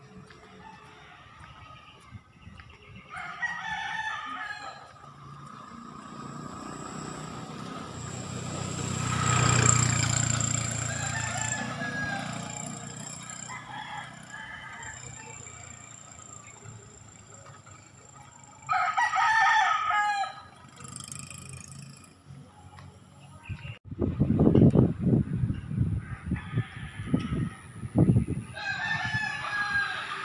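Roosters crowing three times: about three seconds in, again near the middle, and once more at the end. In between, a vehicle passes, swelling to the loudest sound about ten seconds in and fading away, and irregular low rumbling bumps come near the end.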